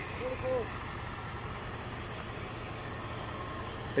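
Steady low hum of an idling vehicle engine, with a faint voice briefly about half a second in.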